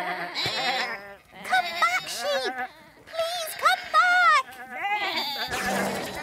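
Cartoon sheep bleating, a flock giving about four rounds of wavering baas, some overlapping.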